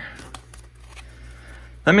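Faint handling of Pokémon trading cards as they are moved around a pack, cards sliding against one another with a few light clicks.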